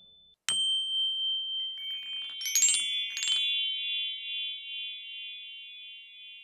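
Outro logo sting made of chime tones: a bright chime struck about half a second in, then two quick shimmering runs of bell-like notes around two and three seconds in, leaving a chord of high tones ringing and slowly fading.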